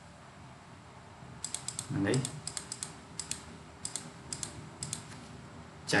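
Clicking of a computer keyboard and mouse while working in software: short sharp clicks in small irregular clusters, starting about one and a half seconds in. A single short spoken word comes about two seconds in.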